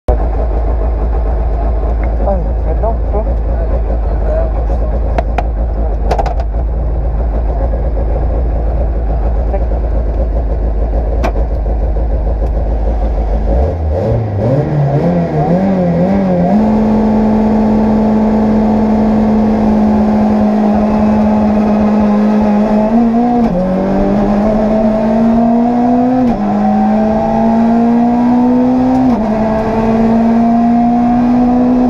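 Citroën C2 R2 rally car's 1.6-litre four-cylinder engine idling, then revved up and held at steady high revs on the start line. It then pulls away and accelerates hard, the pitch dropping with each of three upshifts.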